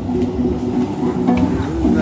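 Acoustic guitar being played, with notes held and ringing between sung phrases of a live reggae song.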